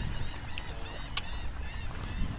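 A few faint bird calls over a steady low rumble, with one sharp click about a second in.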